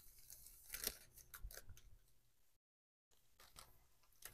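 Near silence with a few faint crinkles of a clear plastic bag as a card of coasters is slid into it, about a second in and again around a second and a half.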